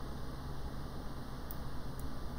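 Steady low hum and hiss of the room and microphone background, with one faint click about one and a half seconds in.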